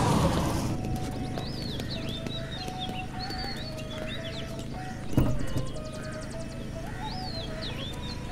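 Birds chirping and twittering in the background, with one sharp thump a little past the middle.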